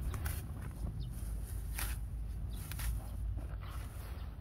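A hand sickle cutting through bunches of horseweed stems, with the leaves rustling: several short, crisp swishes at irregular moments.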